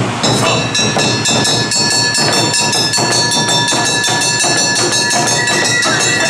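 Awa odori band playing: shinobue bamboo flutes hold a high steady note from just after the start, over a fast, even beat of drums and a kane hand gong.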